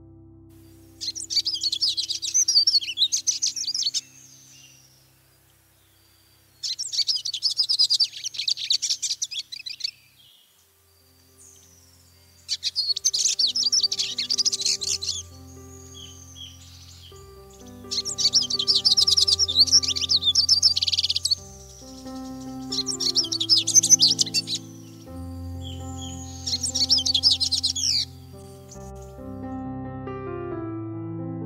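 Siskins singing: six separate bouts of rapid, high twittering song, each two to three seconds long, some ending in a slurred drawn-out note. Soft piano background music runs underneath, growing fuller in the second half.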